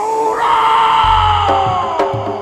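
Live Javanese dance-troupe music: a long high note held for nearly two seconds, sliding down at the end, with a deep low boom coming in about a second in.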